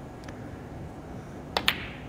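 Snooker cue tip striking the cue ball and, a split second later, the cue ball clicking into the brown: two sharp clicks in quick succession about a second and a half in.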